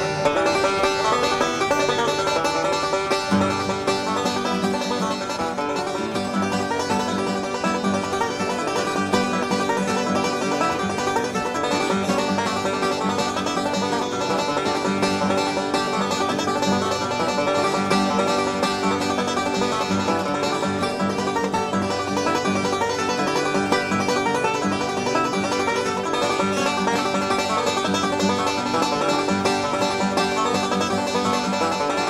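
Five-string banjo picking a bluegrass tune, a steady unbroken stream of plucked notes, with lower notes joining in about three seconds in.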